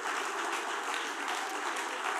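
A congregation applauding, with steady, even clapping from many hands.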